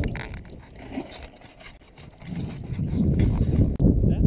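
Low, uneven rumble of wind and road noise in a moving vehicle, gusting on the microphone; it dips about two seconds in and grows louder in the second half.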